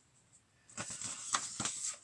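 Large paper sheets rustling as they are handled and flipped, in quick irregular crinkles and brushes that start a little under a second in.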